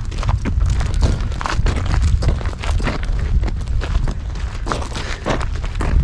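Footsteps on a gravel dirt trail, short irregular steps about two a second, over a steady low rumble on the microphone.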